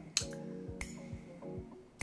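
Soft background music with steady held notes, and two sharp light clinks near the start as a hand mirror is picked up and handled.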